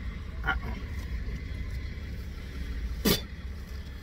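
Steady low rumble of a car idling, heard inside its cabin, with one sharp knock about three seconds in.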